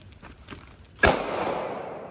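A single gunshot about a second in, a sharp crack followed by an echo dying away over about a second. It is the one shot of a timed drill, fired against a shot timer that reads 1.88 seconds.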